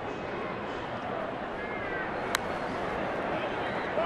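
Ballpark crowd murmuring steadily, with one sharp crack of a bat fouling off a pitch a little past two seconds in.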